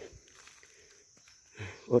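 A quiet gap filled by a steady, high insect chirring, as of crickets. A man's voice is heard briefly at the very start and comes back near the end.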